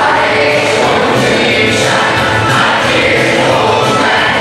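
A children's choir singing over an instrumental backing, continuous and loud.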